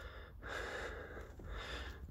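A person breathing close to the microphone, two long, faint breaths.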